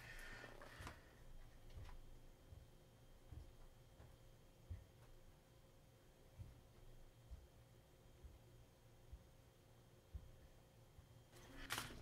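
Near silence: room tone with a faint steady hum and a few soft, scattered knocks.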